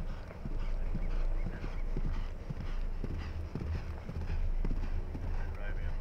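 An Irish Sport Horse galloping on grass turf: a quick, steady rhythm of muffled hoofbeats as it passes close by.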